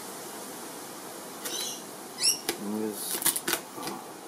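A cluster of small sharp clicks, about three seconds in, from the plastic parts of a clip-on phone lens kit being handled and fitted together. Just before them comes a short rising bird call, then a brief hummed voice, over a steady outdoor hiss.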